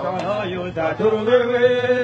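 Voices singing in a chant-like style, the melody wavering and then settling into one long held note about a second in.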